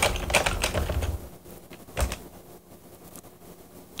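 Typing on a computer keyboard: a quick run of keystrokes for about the first second, then one more click about two seconds in.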